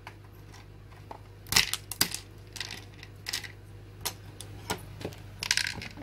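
Pretzel sticks being put into a hard plastic Bentgo Kids lunch box, a string of light clicks and clatters as they land in the compartment.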